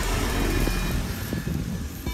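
A low steady rumble underlies faint clicks and rustles from the plastic hand cigarette roller as it is pinched shut and worked around the loose tobacco.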